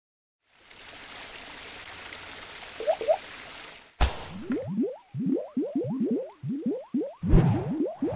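Logo-animation sound effects: a steady hiss for about three seconds with two short blips near its end, then a sharp hit about four seconds in, followed by a rapid run of short rising bloops and splats, several a second, growing louder with low thuds near the end.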